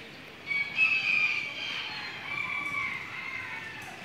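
A rooster crowing once: one long call of about three seconds, starting about half a second in, loudest near the start and falling off at the end.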